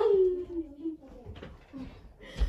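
A girl's drawn-out vocal wail that swoops up and then falls in pitch, lasting just under a second, followed by quieter movement noise.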